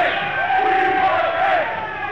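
A rock club audience cheering and chanting with no band playing, on a lo-fi audience tape recording that sounds dull, with the highs cut off.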